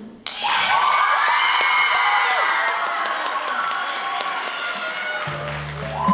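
An audience cheering and screaming, with clapping, starts suddenly just after the introduction. About five seconds in, music with steady bass notes begins under it.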